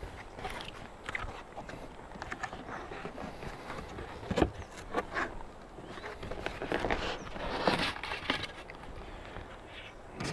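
A cardboard shipping box being opened by hand: the tape slit with a knife, the flaps folded back and a styrofoam cooler lid lifted off, giving scattered rustles and scrapes with a few sharp clicks about halfway through.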